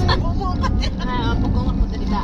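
Steady low rumble of a moving car heard inside the cabin, with short fragments of women's voices over it.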